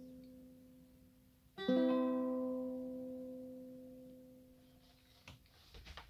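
Tenor ukulele ending a song: the previous chord fades, then one final chord is strummed about a second and a half in and left to ring out slowly. A couple of soft knocks follow near the end.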